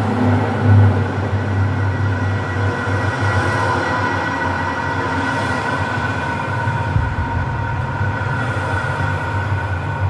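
Steady rumble of a moving vehicle, with a few steady whining tones above it; the deep rumble grows stronger about seven seconds in.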